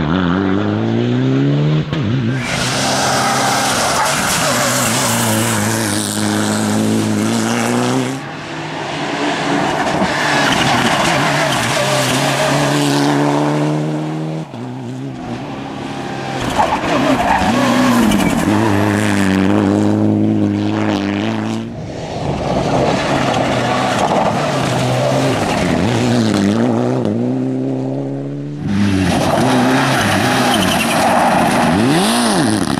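Mitsubishi Lancer Evo IX rally car's turbocharged four-cylinder engine revving hard, pitch climbing through each gear and dropping at the shifts and braking, with tyres skidding on the loose surface. The sound cuts abruptly several times as one pass gives way to another.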